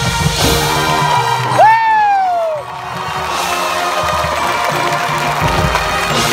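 High school marching band playing held chords with brass and drums. About one and a half seconds in, someone nearby lets out a loud whoop that falls in pitch over about a second.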